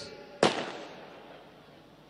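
A single sharp firecracker bang about half a second in, its echo fading over about a second.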